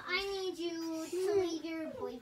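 A young girl singing a few held notes in a short tune, each note sustained before stepping to the next.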